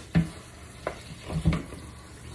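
Something being rinsed under a running kitchen tap, with three knocks as it is handled against the sink.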